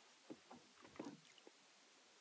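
Near silence: room tone in a meeting chamber, with a few faint, brief sounds in the first second and a half.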